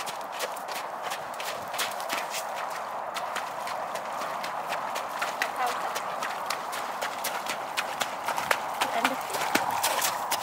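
Hoofbeats of a ridden horse on wet ground: a quick, uneven run of sharp hoof strikes.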